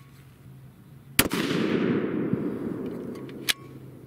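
A single shot from a custom 7mm PRC bolt-action rifle with a muzzle brake: one sharp crack about a second in, echoing away over about two seconds. About two seconds after the shot there is a short sharp click as the bolt is worked. On this hot H1000 load the bolt lift is stiff and 'clicking', a pressure sign.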